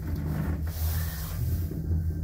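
Kone Sigma lift car travelling upward between floors: a steady low rumble and hum of the car in motion.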